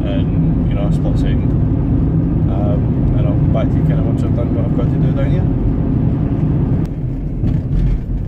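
A van's engine and road noise heard from inside the cab: a steady low drone under a man's voice, changing abruptly near the end.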